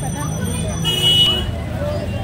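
Busy street-market noise: a steady rumble of traffic and crowd chatter, with a short high tone about a second in.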